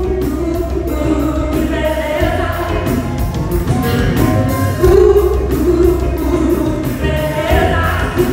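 Live band playing soul music with female voices singing together into microphones over bass and drums, in a large hall.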